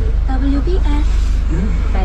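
A voice speaking on the car radio inside the cabin, over the steady low hum of the car's engine while it is being parked.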